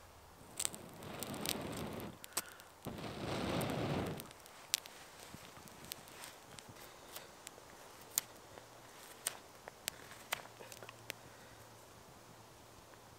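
Two long breaths blown into smouldering wood-scraping tinder to bring it to flame, each lasting about a second. They are followed by a small fire of shavings and thin sticks crackling with scattered sharp pops.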